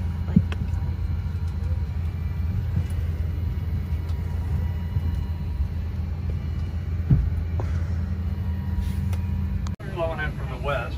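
Steady low hum of a parked airliner's cabin during boarding, with two soft thumps, one about half a second in and one about seven seconds in.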